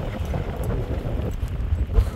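Wind buffeting a handheld camera's microphone outdoors, with footsteps crunching on a gravel road.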